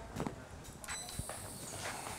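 Light clicks and handling knocks of a facial suction extraction cup worked over the nose. A thin, steady high-pitched whine comes in about a second in.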